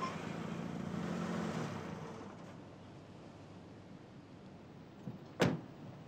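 A car's engine running close by, fading away after about two seconds and leaving a quiet background. A single sharp click or knock comes about five and a half seconds in.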